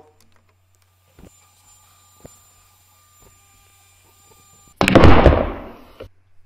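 A sudden loud bang or boom near the end that dies away over about a second, after near silence broken by a few faint ticks.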